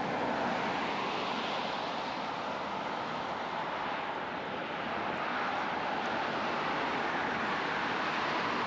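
Road traffic: cars passing on the adjacent road, a steady tyre-and-engine rush that swells and eases as they go by.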